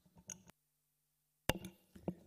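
A few light clicks. The sound then drops out for about a second, and a sharp thump on a conference table microphone follows about one and a half seconds in, as the mic is switched on or handled.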